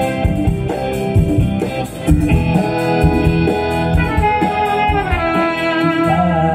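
Live band playing an instrumental passage through stage speakers: sustained trumpet and saxophone lines over keyboard and drums. The lead line slides down in pitch about four seconds in.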